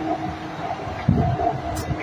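Metro train running through a tunnel: a steady hum with irregular low rumbling thumps.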